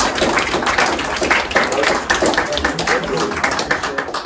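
Applause from a small seated audience, many hands clapping steadily, with some voices mixed in.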